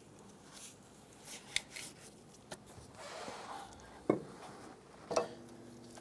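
Faint handling noises from work on a serpentine belt drive: a few sharp clicks and knocks, the clearest about four seconds in, with some soft rubbing as a gloved hand and a ratchet work the belt and tensioner.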